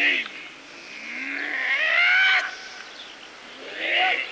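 Long, drawn-out kiai shout from practitioners of a Jikishinkage-ryu hojo kata. It rises in pitch and swells for about two seconds, then cuts off. Shorter shouts come at the start and near the end.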